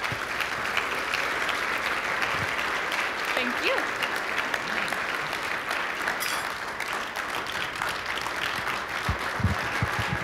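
Large audience applauding steadily, a standing ovation after a speech, with a brief voice calling out in the middle and a few low thumps near the end.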